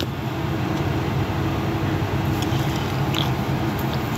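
A steady low mechanical hum, like a fan or air conditioner running, with a couple of faint clicks in the second half.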